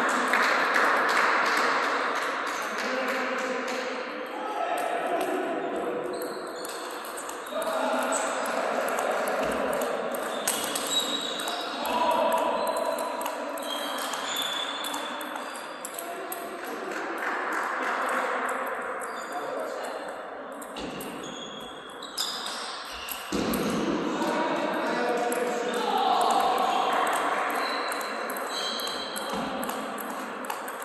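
Table tennis rallies: the ball clicking back and forth off the bats and the table in a large sports hall, with voices in the background.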